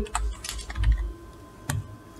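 Computer keyboard keys clicking a few times, scattered across two seconds, over a low rumble in the first second.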